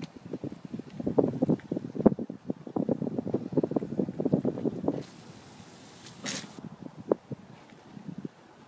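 Car tyres crunching over snow at low speed: a rapid, irregular crackle for about four seconds, then a short hissing rush about five seconds in.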